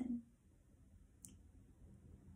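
A woman's voice finishing a question, then a quiet pause with one faint, short click a little past a second in.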